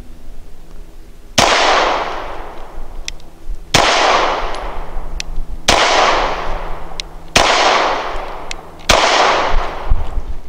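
Five shots from an HK P30SK 9mm pistol, spaced about one and a half to two seconds apart, each with a long echo trailing off after it.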